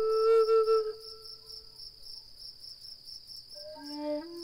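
A cricket chirping in a steady pulsing trill with a flute. A held flute note stops about a second in, the cricket carries on alone, and a new, lower flute note starts near the end.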